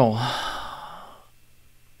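A man lets out a long, breathy sigh that fades away over about a second, just after the end of a spoken word.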